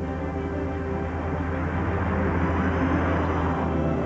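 Background music with a car engine running as the Sunbeam 90 Mark III coupe's two-and-a-quarter-litre engine drives past, building slightly in level.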